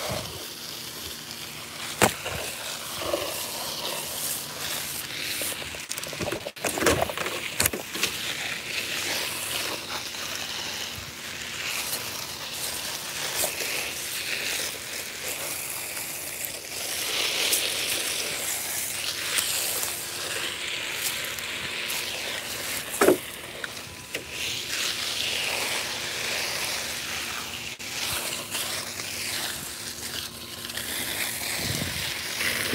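Garden hose spraying water onto potted plants, a steady hiss and patter of water on leaves and soil. A few brief knocks cut in, the sharpest a little over 20 seconds in.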